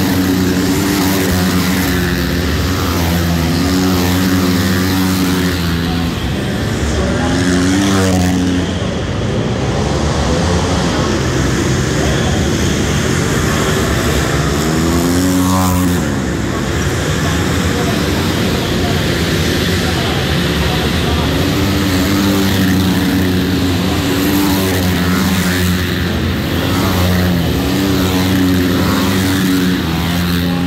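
Several 450cc four-stroke single-cylinder dirt-track race motorcycles lapping inside a large arena, their engines revving up and down through the corners. Bikes pass close by about eight seconds in and again about fifteen seconds in, the pitch sweeping up and then down as each goes past.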